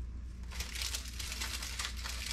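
Thin plastic keyboard membrane sheets crinkling and crackling as they are handled and peeled apart, a dense crackle starting about half a second in.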